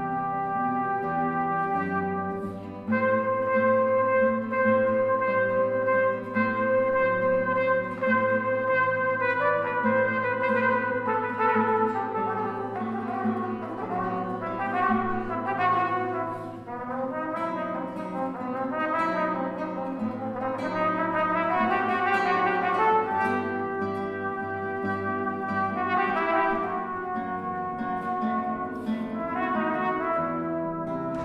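A cornet and a classical guitar playing an oriental-sounding duo melody live: the cornet holds long notes over the guitar at first, then moves into quicker phrases from about nine seconds in.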